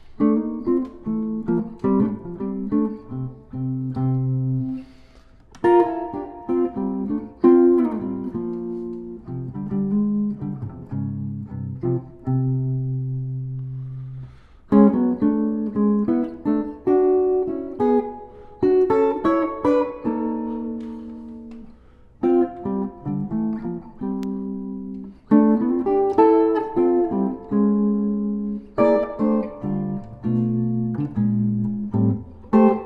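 Solo jazz guitar played on a Gibson archtop: unhurried chords and melody over sustained bass notes, in phrases with brief pauses between them.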